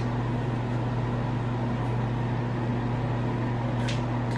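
A steady low mechanical hum with no change in pitch or level.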